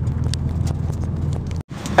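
Car cabin noise while driving: a steady low engine and road drone with tyre hiss. It cuts off suddenly near the end.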